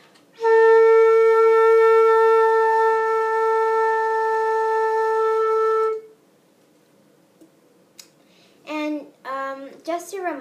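Concert flute sounding a single long, steady A held for about five and a half seconds, then stopping.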